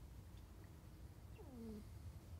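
Near silence, room tone, broken once about three-quarters of the way through by a short, faint, falling closed-mouth "mm" from a woman hesitating mid-answer.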